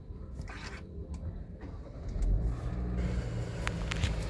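Kia Carens' 1.5-litre petrol engine started with the push-button starter, heard from inside the cabin. It catches about two seconds in and settles into a steady idle.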